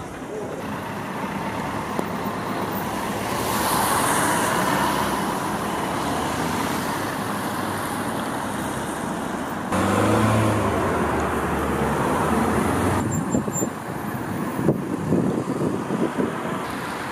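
Street ambience of road traffic going by, its character changing abruptly a few times as the recording is cut. A louder vehicle swells past about ten seconds in, and a few sharp knocks come near the end.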